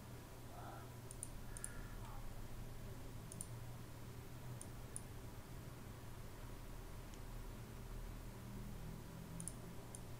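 A few faint computer mouse clicks, several in quick pairs, scattered over a low steady hum.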